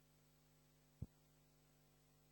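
Near silence: a faint steady electrical hum, broken once by a single short click about halfway through.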